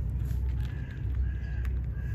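A bird calling in short calls of steady pitch, repeated, over a steady low rumble.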